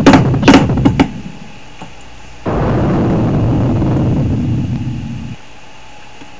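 The closing moments of a 1980s TV anti-crack public service announcement played from a computer. The announcement's voice and music end about a second in. Then a low, deep sound effect starts suddenly at the closing title, holds for about three seconds while fading a little, and cuts off abruptly.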